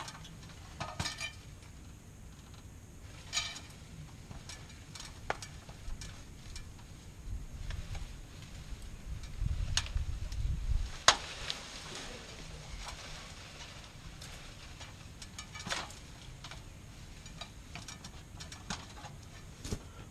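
Hand-trimming of a palm tree: scattered snaps and clicks of the cutting tool and rustling of fronds, with a rumbling rustle building up and a loud crack about eleven seconds in.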